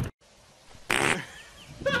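A goat gives one short, raspy call about a second in, with a faint falling tail. A voice starts shouting "stop" near the end.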